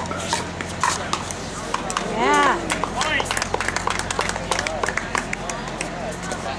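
Pickleball rally: a few sharp pops of paddles striking the plastic ball, then one loud shout a little over two seconds in as the point ends, followed by a quick patter of scattered clapping.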